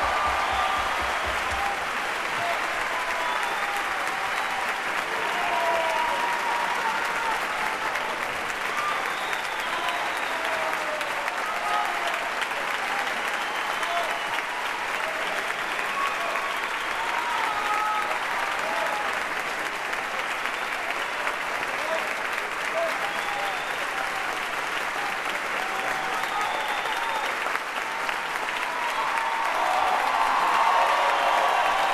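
Concert-hall audience applauding, a long, steady ovation in a large hall, with voices calling out here and there among the clapping.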